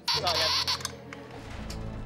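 A buzz-wire game's electric buzzer sounds a steady low buzz from about a second and a half in, as the metal loop touches the wire. It follows a loud burst of a voice at the start.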